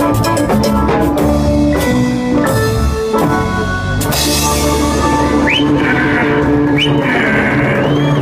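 Live Latin dance band playing an instrumental passage without vocals: drum kit, bass, keyboard and guitars, with a metal güira scraped in rhythm. A cymbal wash comes in about halfway through.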